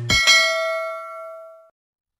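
A single bell-like ding, a notification-bell sound effect, struck once and ringing out, fading away over about a second and a half.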